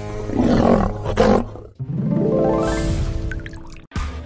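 A woman's drawn-out exasperated groan over background music. It is followed by a rising tone that sweeps up for about two seconds and cuts off abruptly near the end, like a scene-transition sound effect.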